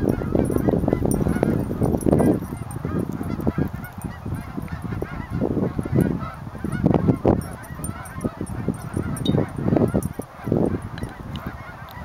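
A flock of geese flying overhead, many birds honking at once in a steady, overlapping chorus. A low rumble sits under the calls, heaviest in the first two seconds.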